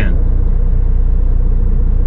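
Semi truck's diesel engine idling, a steady low rumble heard from inside the cab.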